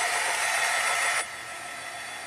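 Handheld craft heat tool blowing hot air over wet watercolour paint to dry it: a steady fan hiss with a faint whine. It gets noticeably quieter about a second in and keeps running.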